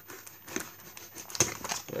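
Plastic packaging crinkling as it is handled and pulled open, in irregular crackles with a sharper one about one and a half seconds in.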